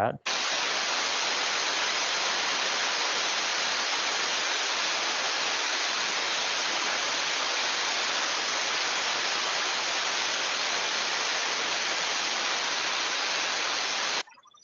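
Steam boiler safety valve blowing off in a pop test at 14 kgf/cm²: a loud, steady rush of escaping steam that cuts off suddenly near the end. The valve has lifted at its set pressure and is relieving the boiler to the atmosphere.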